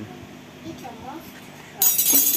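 A short, bright metallic clink and jingle near the end, as metal is handled at the open rocker-arm valve gear of a pushrod motorcycle engine.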